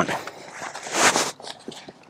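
Leather seat cover rustling and scraping against the seat as it is stretched and pulled down over the seatback, swelling about a second in and fading near the end.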